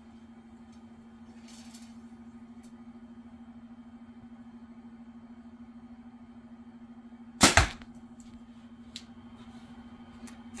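A Darton Prelude E32 compound bow shooting a light 311-grain arrow about seven seconds in: one loud sharp crack of the string at release, with a second hit close behind as the arrow strikes the target. A steady low hum runs underneath.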